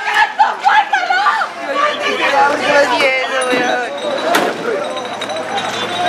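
Several people's raised voices talking over one another, with a single sharp click about four and a half seconds in.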